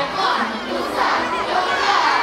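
A crowd of children shouting and calling out at once, many high voices overlapping, with surges of louder shouting about a quarter second, one second and two seconds in.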